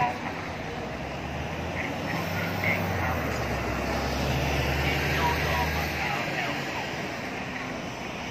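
Road traffic: a passing bus's engine rumble swells over the first few seconds and fades out about six seconds in, over steady street noise and background voices.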